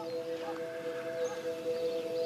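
Soft background score: a sustained drone of a few held notes, steady and without a beat.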